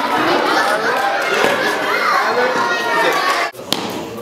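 Many young children talking and calling out over one another in a large gymnasium hall. The chatter cuts off abruptly about three and a half seconds in, followed by a single sharp click and quieter voices.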